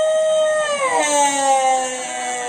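A singer's long held note, steady for about a second, then sliding smoothly down in pitch and holding again.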